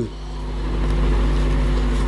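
A steady low hum with a deep rumble under it, growing louder over the pause.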